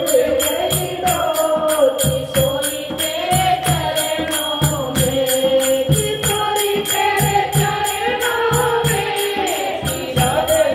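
Women singing a Hindi devotional bhajan to Radha Rani, a lead voice through a microphone with the group singing along. Hand-clapping and percussion keep a steady quick beat, about three to four strokes a second.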